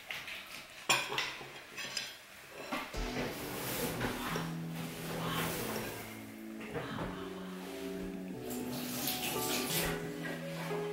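A ceramic plate set down on a wooden table and a fork knocking against it, two sharp clinks about one and two seconds in. Background music with sustained notes comes in about three seconds in and runs on.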